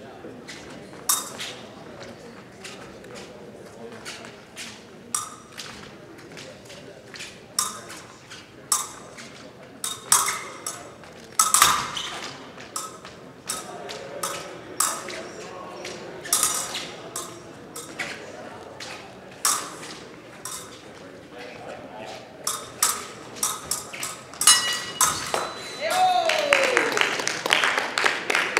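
Steel épée blades clinking together and fencers' feet stamping on the piste in a series of sharp clicks and knocks, over a murmur of voices in a large hall. Near the end a steady electronic tone from the scoring machine sounds as a touch lands.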